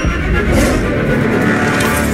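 Animated-film sound effects: a sharp hit at the start, then a loud, steady rushing rumble.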